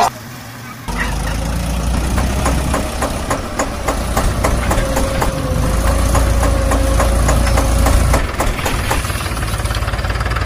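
Small engine of a mini tractor running steadily with a rapid ticking beat, starting about a second in.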